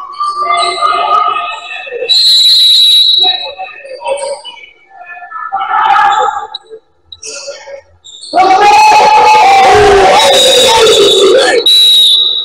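Indoor basketball game: a referee's whistle blast about two seconds in, with scattered voices, then loud shouting from players and onlookers in the last four seconds, with another whistle sounding near the end as the game finishes.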